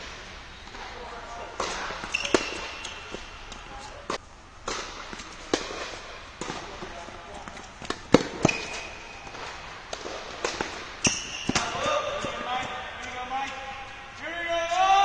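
Tennis balls being struck by rackets and bouncing on a hard court during a rally, a string of sharp pops at irregular intervals with a slight echo, inside an indoor tennis dome. Voices are heard near the end.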